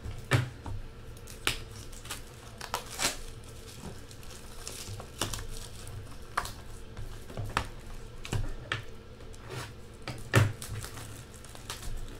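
Plastic shrink wrap being crinkled and torn off a sealed trading-card box, with irregular clicks and taps as the cardboard box is handled.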